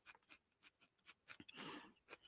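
Faint, quick repeated pokes of a barbed felting needle stabbing into a piece of wool felt, firming it up.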